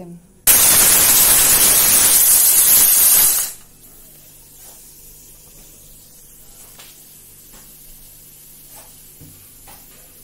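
Pressure cooker whistle: a loud hiss of steam escaping from the weight valve, starting suddenly about half a second in and lasting about three seconds before dying away. It is the sign that the cooker has come up to full pressure.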